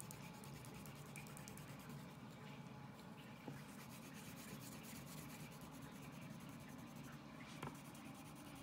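Wax crayon shading on paper: a faint, steady scratchy rubbing, with a small tick about three and a half seconds in and another near the end.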